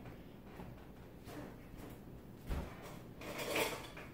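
Faint clatter of kitchen utensils being handled in a countertop utensil holder while a spatula is taken out, loudest a little after three seconds in, with a short low thump about two and a half seconds in.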